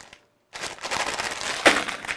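Clear plastic bag of copper-coated scrubbing pads crinkling as it is handled and laid down, starting about half a second in and loudest near the end.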